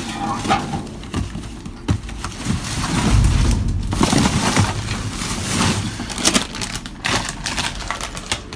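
Plastic bags, wrappers and cardboard rustling and crunching as trash in a dumpster is shoved about by hand, with scattered sharp clicks and knocks and a dull low rumble about three seconds in.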